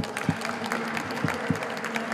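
Light, scattered applause from an audience, heard as separate irregular claps rather than a dense ovation.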